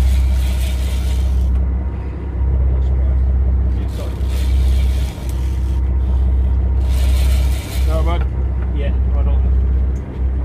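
Steady low rumble of a boat at sea, broken by a hissing rush every few seconds, with a faint voice about eight seconds in.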